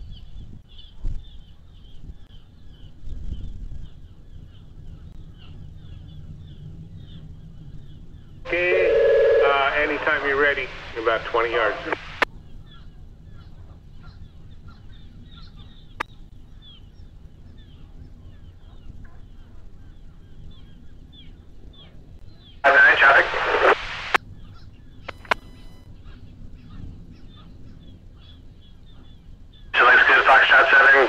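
Marine VHF radio traffic: two short, garbled transmissions, about 8 and 23 seconds in, each cutting in and out abruptly over a low steady background hiss.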